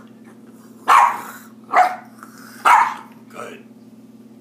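A dog barking: three loud, short barks a little under a second apart, then a fainter fourth.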